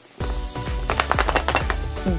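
Background music, with a quick run of clicks from a plastic surprise egg being shaken: a small solid toy rattles inside it, so it is not a slime egg.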